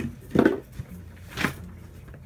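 Two short knocks from objects being handled on a desk, one about half a second in and one about a second and a half in.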